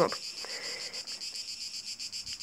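A steady, high-pitched background noise with nothing else over it, heard in a short pause between spoken phrases.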